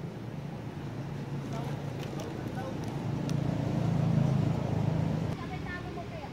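A motor vehicle's engine running nearby, a steady low hum that grows louder and then drops away suddenly about five seconds in.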